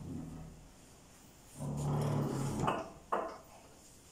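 A man's low voice sounds briefly about a second and a half in, followed by two sharp knocks close together.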